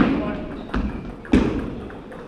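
Three heavy thumps echoing in a large hall, at the start, about three-quarters of a second in and about a second and a third in. The first and last are the loudest.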